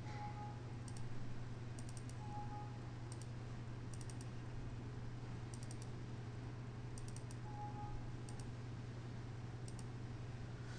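Faint clicks of a computer keyboard and mouse, in short groups of one to three about every second, over a steady low electrical hum.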